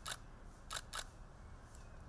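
A few faint, short clicks over low background hiss: one near the start and two close together around the first second.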